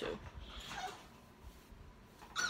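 A dog whimpering faintly: one short whine about half a second in, against a quiet room.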